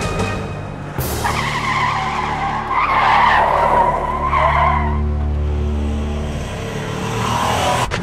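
A vehicle's tyres skid and squeal under a low engine rumble, as a film sound effect over soundtrack music. It starts suddenly about a second in, and the squeal dies away after about four seconds.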